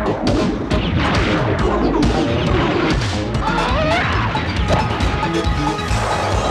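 Anime film soundtrack: crashing, smashing action sound effects over music, with repeated sharp impacts throughout and a short wavering glide in pitch a little past the middle.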